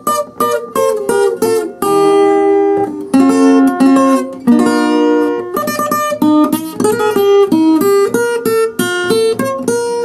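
Capoed acoustic guitar playing a bachata lead passage, picked note by note with two-note pairs mixed in and a few notes held for about a second.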